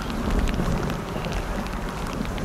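Rain falling on pool water and wet paving: a steady hiss scattered with many small drop ticks, over a low rumble of wind on the microphone.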